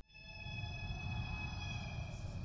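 A held drone of several steady tones at once, over a low rumble, fading in from silence in the first half second. It is music sung with the human voice, layered and processed, holding pitch without wavering.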